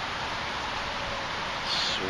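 Steady outdoor background hiss by open water, with no distinct event in it.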